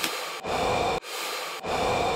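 Fast, panicked breathing into a paper bag, about four quick breaths of rushing air with the bag crinkling, the sound of someone hyperventilating.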